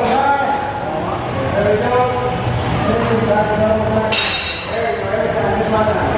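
Voices with drawn-out, sung-sounding notes over a steady low background. A brief, brighter, higher sound comes about four seconds in.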